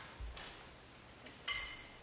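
Quiet pause with small handling noises as the players ready their instruments: a soft thump near the start, then one short, bright, ringing clink about one and a half seconds in.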